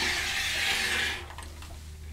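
Rotary cutter rolling along the edge of a quilting ruler, slicing through cotton fabric on a cutting mat to make a diagonal bias cut. It is a steady scraping hiss for just over a second, then it stops.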